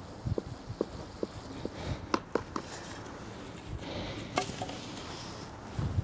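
A wooden stick worked in a plastic bucket, knocking about twice a second as it stirs, with a few sharper clicks around the middle.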